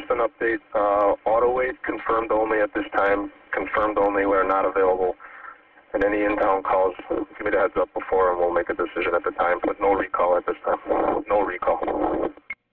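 Two-way radio dispatch traffic: a voice talking over a narrow-band radio channel, with one short break about five seconds in.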